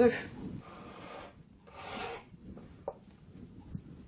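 Kitchen knife cutting through a thin feuille de brick pastry sheet on a wooden board: two soft rasping strokes, then a small tap near the end.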